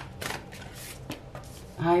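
Tarot cards being handled: the deck worked in the hands and a card drawn out and laid on the cloth, a few short, sharp papery snaps and slides.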